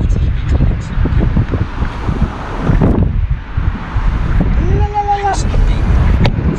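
Car interior driving noise: a loud, steady rumble of road and engine heard inside the cabin, with wind buffeting the microphone. A brief pitched vocal sound, like a short hum, comes about five seconds in.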